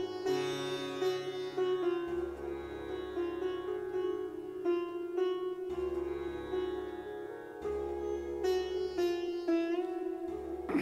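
Sitar music over a steady drone, with plucked notes changing every second or so.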